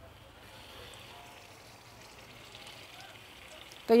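Faint, steady sizzle of marinated surmai fish slices shallow-frying in hot oil in a non-stick pan, starting about half a second in as the slices go into the oil.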